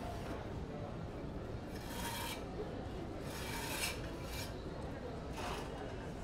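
Four short rasping scrapes over a steady outdoor street background; the two longest come about two and three-and-a-half seconds in, with shorter ones near four-and-a-half and five-and-a-half seconds.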